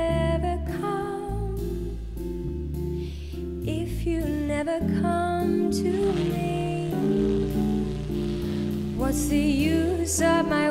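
Female vocalist singing a slow, gentle bossa nova with a small jazz band of guitar, electric bass and drums.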